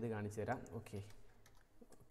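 A few computer keyboard keystrokes and clicks as the selected text is deleted, after a man's voice in the first half-second.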